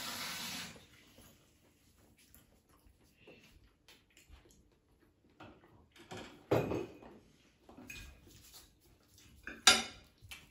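Fork and chopsticks clicking against ceramic dinner plates while eating. The clicks are scattered and soft, with a sharper clink about two-thirds of the way through and the loudest one just before the end; a brief rush of noise is heard in the first second.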